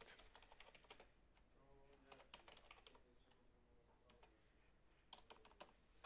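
Faint computer keyboard typing: irregular keystroke clicks, with a short flurry of keys about five seconds in.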